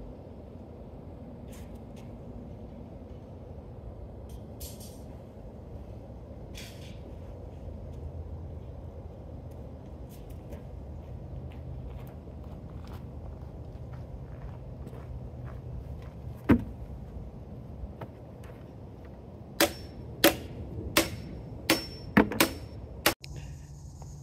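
Low steady background noise with faint scattered clicks. One sharp knock comes about two-thirds of the way in, then a quick run of six sharp knocks near the end.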